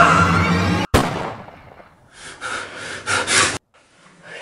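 Background music that cuts off at a sudden sharp bang about a second in. A few heavy, gasping breaths follow, the sound of someone jolted awake.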